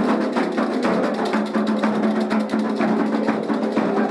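Candomblé atabaque drums playing a fast, dense rhythm for the rum, the dance of the orixá Ogum, with a wood-block-like struck accent in the mix.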